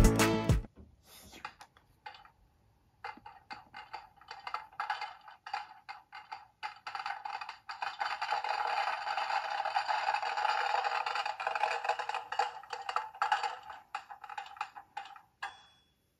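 Battery-powered toy popcorn machine playing its popping sound effect: a rapid run of pops over a steady tone, starting about three seconds in, fullest around the middle and stopping shortly before the end.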